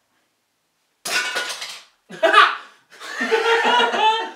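Two men laughing heartily, starting about a second in and building to sustained laughter near the end.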